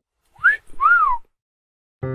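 A person's two-note wolf whistle: a short upward note, then a longer note that rises and falls.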